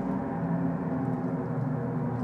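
A record slowed down on a turntable, playing through a mixing desk as a steady drone of several held low tones.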